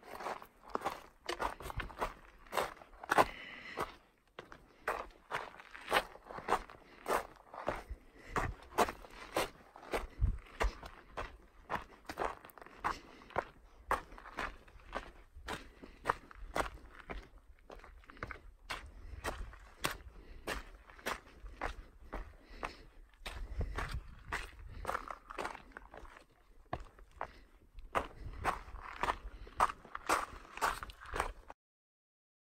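A hiker's footsteps on a rocky, gravelly mountain trail, a steady walking rhythm of about two steps a second.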